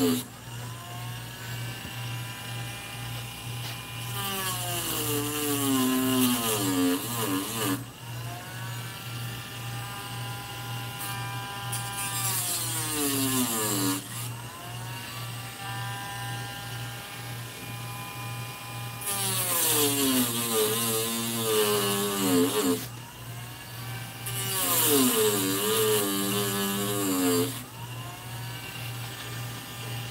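A small handheld power tool motor runs throughout. Several times its pitch drops and a gritty grinding hiss rises as it bears on the work, then it climbs back to a steady high whine when it is lifted off. A low steady hum runs underneath.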